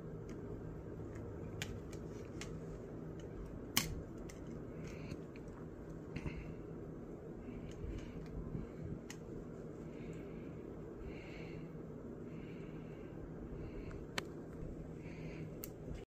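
Scattered light clicks and taps of hands handling the plastic cooling-fan housing of an open laptop, with the clearest click about four seconds in and another near the end, over a faint steady low hum.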